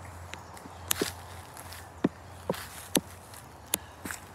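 Footsteps on a forest floor of dry leaf litter and twigs, with a sharp click from a step about once a second.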